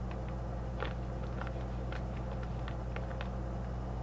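Scattered light crackles and clicks from a foil chewing-tobacco pouch being handled, over a steady electrical hum.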